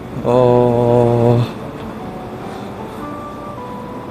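A man's long, flat, drawn-out "aah" held at one pitch for about a second, followed by a faint background hum with a few thin, steady high notes that change pitch twice near the end.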